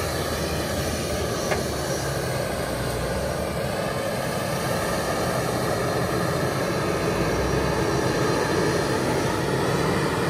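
Case IH Quadtrac tracked tractor's diesel engine running steadily under load as it pulls a Claydon tine seed drill through the soil, growing a little louder near the end.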